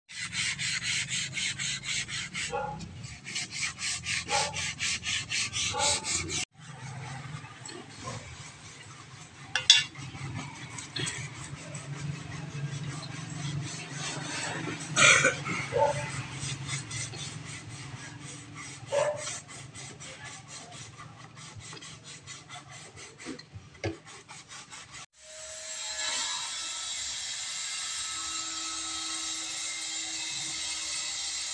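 Sandpaper rubbed by hand over a wooden panel door: fast, even back-and-forth scraping strokes, loudest in the first six or so seconds and fainter after a sudden break, with a few sharp knocks. Near the end a steady hiss replaces the strokes.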